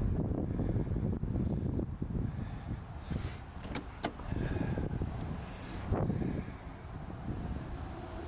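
Wind and handling rumble on the microphone while walking up to a 1990 Mercedes-Benz 190E Evo II, then a few sharp clicks and the driver's door being unlatched and pulled open.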